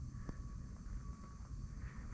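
Quiet, steady low background rumble with a faint high hum, and one light click about a quarter second in.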